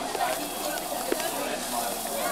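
Indistinct background voices of a gathering, over a steady hiss, with one small click about a second in.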